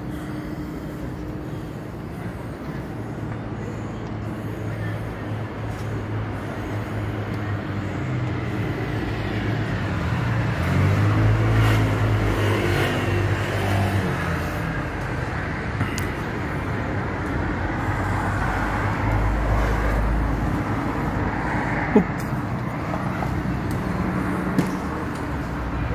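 Street traffic: a motor vehicle's engine running close by, its hum swelling and shifting in pitch about halfway through, over a steady traffic rumble. A single sharp click near the end.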